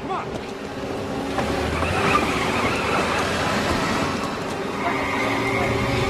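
A car pulling away on a rain-soaked street, engine and tyres over the hiss of rain, with raised voices in the mix, as a dramatic film sound mix at a steady level.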